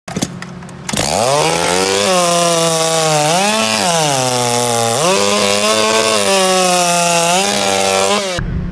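140 cc two-stroke racing chainsaw catching about a second in and revving up to a steady high-speed run. It drops to a lower pitch for about a second around the four-second mark, then revs back up to high speed.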